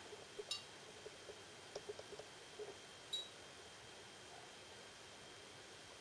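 Near silence: quiet room tone with a faint steady high whine and a few faint, scattered ticks.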